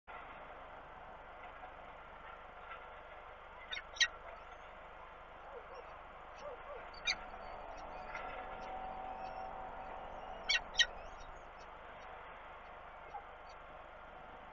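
Peregrine falcon chicks giving short, sharp begging cheeps, a few scattered calls, some in quick pairs, as they are fed, over a steady hiss.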